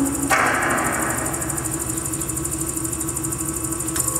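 Kinetic sound-art machines built from salvaged electronics and motors running in a live performance: a fast, even rattle of ticks over a steady low hum and a high hiss. A noisy swell comes in about a third of a second in and fades over the next second, and the mix shifts again at the end.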